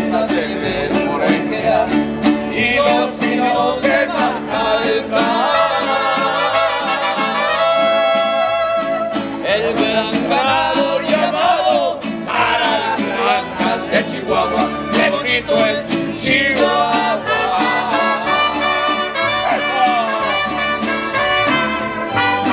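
Mariachi band playing live: violins carrying the melody over rhythmically strummed guitars.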